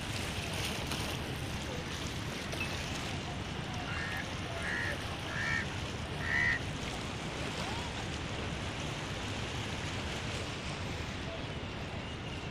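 Steady outdoor noise of wind and sea water, with a bird calling four short times in quick succession about four to six and a half seconds in.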